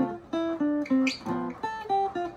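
Archtop jazz guitar playing a short phrase of about seven picked notes and chord voicings. It is the D minor–G7–C major progression with different melody notes on top.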